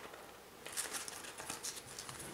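Faint rustling and crinkling of a glitter foam sheet being pressed and worked by hand around a small ball. Quiet at first, then a run of short rustles from a little past half a second in.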